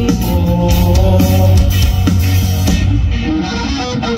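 Rock band playing live through a festival PA: electric guitars, bass and drums, with no singing. The cymbals drop out about three seconds in, leaving guitars and bass.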